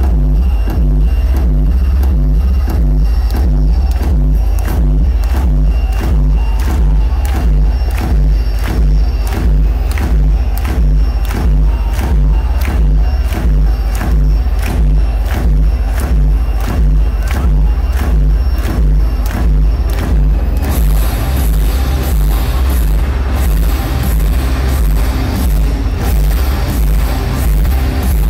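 Loud live electronic music over an arena PA: a heavy, constant bass under an even beat of about two strikes a second. About twenty seconds in, a wash of high hiss joins.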